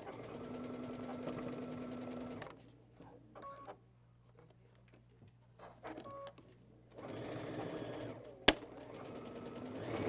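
Baby Lock sewing machine stitching patchwork in two runs: one of about two and a half seconds at the start, and another from about seven seconds in to the end. Short beeps sound in the pause between the runs, and a single sharp click comes partway through the second run.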